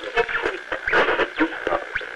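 Radio-transmission voice chatter, clipped and crackly, as in space-mission communications audio.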